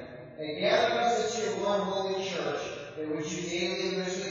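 A man's voice intoning a liturgical prayer in a chant-like, held monotone, in long phrases with brief pauses between them.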